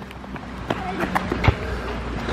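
A football kicked on an asphalt court, with a few sharp knocks of ball and players' feet; the loudest comes about one and a half seconds in.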